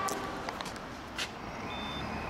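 Steady street traffic noise, with a few sharp clicks from the handheld camera being swung. A thin, high, steady beep-like tone starts in the second half.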